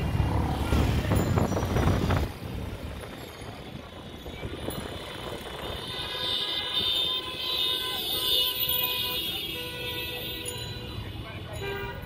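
Busy city traffic heard from a moving vehicle: engines and road noise, with a loud low rumble for the first two seconds. From about six seconds in, several vehicle horns sound in overlapping steady tones for a few seconds.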